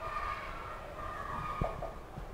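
Marker pen squeaking on a whiteboard while writing a word, with wavering high squeaks and a short tap about one and a half seconds in.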